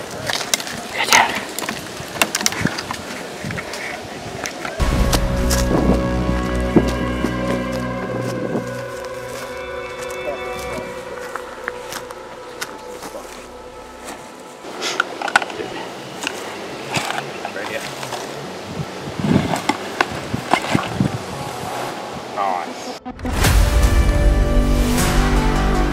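Background music over scuffing and rustling footsteps on dry grass and leaf litter, with scattered clicks and crunches. Louder music cuts in suddenly near the end.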